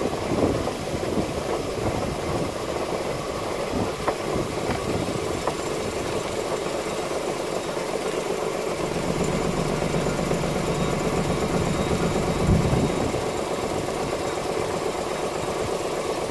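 Vibratory sieve running with a steady hum and vibration as it sifts breadcrumbs. A brief low thump comes about three-quarters of the way through.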